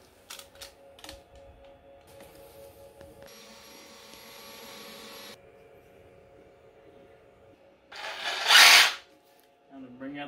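A handheld electric power tool run in one short burst of about a second near the end, the loudest sound here; before it, a few faint clicks and a quiet hiss over a faint steady music tone.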